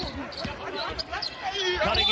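A basketball dribbled on a hardwood court, with a few separate bounces.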